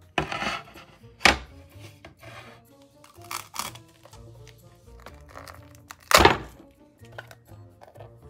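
Background music, with several sharp knocks and thunks of 3D-printed yellow TPU duck parts being handled and set against the work mat. The loudest knock comes about six seconds in.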